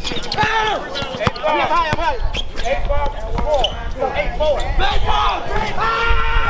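A basketball bouncing on a hard court at intervals, amid players' shouts and calls.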